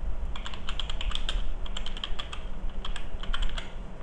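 Computer keyboard typing: a quick run of about ten keystrokes lasting roughly three seconds, starting just after the beginning, with a low steady hum underneath.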